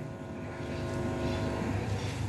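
Steady low hum and rumble of room noise, with a few faint steady tones, in a pause between spoken phrases.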